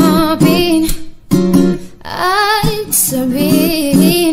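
Acoustic cover of a Tagalog love song: a woman singing with vibrato over acoustic guitar. The voice drops out briefly about a second in and again near two seconds.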